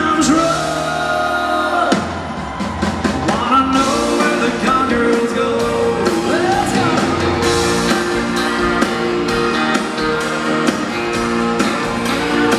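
Live band playing a country-pop song, with a man singing lead over drum kit and fiddle.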